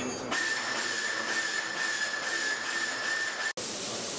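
Compressed air hissing steadily with a high, steady whistling tone. It stops abruptly near the end.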